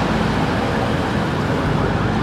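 Steady road traffic noise from vehicles passing on a street close by.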